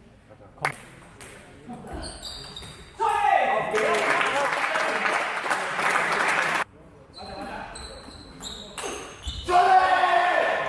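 Celluloid-style table tennis ball clicking off rackets and pinging on the table in a rally. After about three seconds a loud, drawn-out shout begins and cuts off suddenly. More quick pings of the ball follow, and a second loud shout comes near the end.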